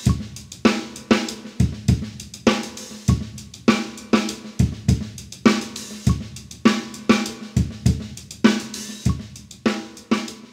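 Acoustic drum kit playing a sixteenth-note groove in 5/4: steady hi-hat strokes over bass drum and snare, with the five-beat pattern repeating about every three seconds.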